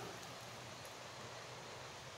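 Faint, steady outdoor background hiss in woodland, with no distinct footsteps or other events.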